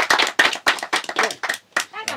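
Several people clapping by hand in a loose rhythm, the claps growing sparser and uneven toward the end.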